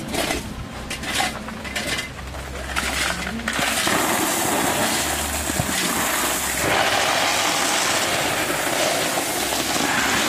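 Gravel poured from plastic buckets into a plastic-lined filter trench. Scattered clatter of stones gives way, about three and a half seconds in, to a loud, steady rushing rattle as a bucket is emptied.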